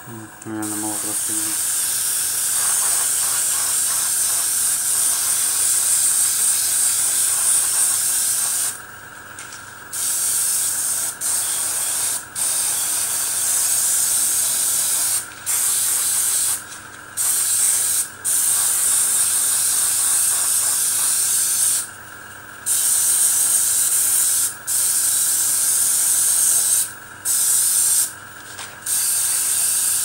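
Airbrush spraying green paint: a steady hiss of air and paint in long stretches, cut off briefly about ten times as the trigger is let go. Underneath, a faint steady hum from the air compressor runs on through the pauses.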